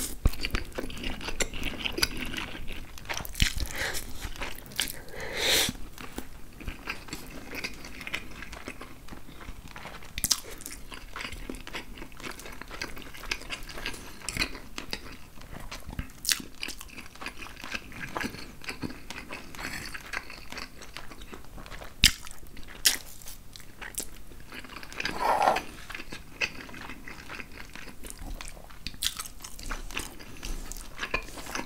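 Close-miked eating: wet chewing and slurping of angel hair pasta and chicken, full of small mouth clicks and smacks. A few sharper clicks stand out, the loudest about two-thirds of the way through, with a longer slurp or swallow a little after it.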